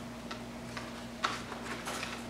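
Quiet meeting-room tone with a steady low hum and a few faint ticks, the clearest about halfway through.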